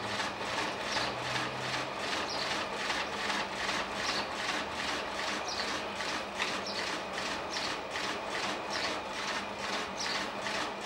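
Potter's wheel spinning with a quick, regular swishing rhythm as wet hands rub and shape the rim of a clay jar turning on it, over a low steady hum.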